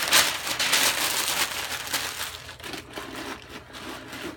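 A sheet of brown paper being crumpled by hand: loud crinkling and crackling for the first two seconds or so, then softer rustling.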